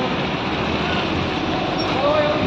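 Steady low vehicle rumble with no distinct knocks or changes.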